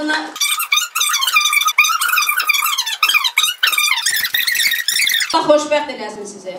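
A woman's speech turned into a high, squeaky chipmunk-like voice by a pitch-up effect, with no low tones, from about half a second in to about five seconds in; her normal voice returns near the end.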